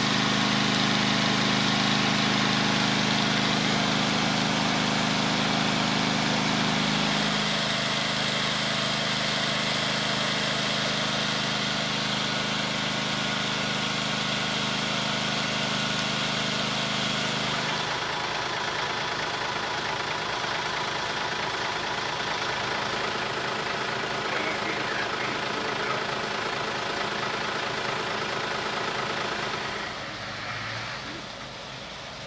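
Fire engine's diesel engine running steadily at idle, with a hose line connected to its pump. The low engine drone shifts slightly about seven seconds in and weakens after about eighteen seconds, leaving a steady hiss.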